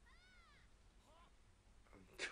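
Near silence, with a faint high-pitched call that rises and falls over about half a second at the start, and a second, shorter call about a second in.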